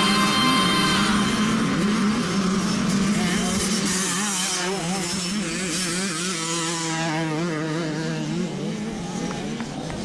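Motocross bike engine running, its pitch wavering up and down, slowly fading.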